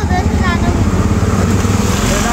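Auto-rickshaw engine running steadily as it drives, heard from inside the open passenger cabin as a low, fast-pulsing rumble.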